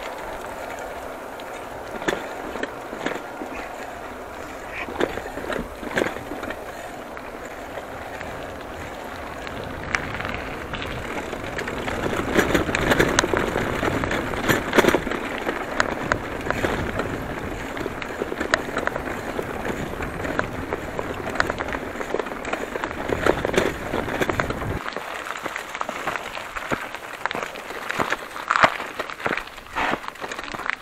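Mountain bike ridden over a rough dirt-and-gravel track: tyres crunching and the bike rattling and clicking over bumps, with a low wind rumble on the handlebar microphone. The ride is loudest a little before the middle, and the low rumble drops away about five seconds before the end as the bike stops.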